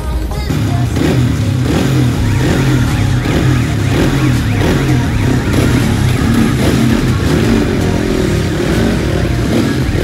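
Ice speedway motorcycle engines running in the pits, revved up and down again and again, with music playing underneath.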